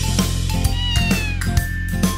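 A cartoon kitten's meow, one falling call of about a second, over a children's-song backing track with a steady bass and drum beat.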